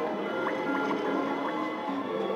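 Slot machine's electronic free-games bonus music, a run of held notes with short rising blips about twice a second as the reels spin.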